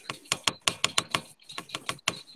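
Computer keyboard being typed on: a quick run of sharp key clicks, about six a second.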